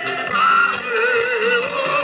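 Live gospel band music with electric guitars, drums, keyboard and percussion, and a male lead voice singing, holding a wavering note in the middle.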